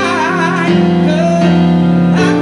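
Live band music: a man singing into a microphone over keyboard accompaniment, his voice wavering on a held note near the start.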